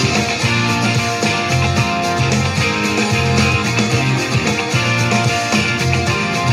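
Instrumental passage of a rock song with guitar over a prominent electric bass line, playing steadily with no vocals.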